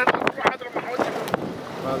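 Wind on the microphone with a steady rushing noise, a few sharp clicks in the first half-second, and voices talking in the background near the end.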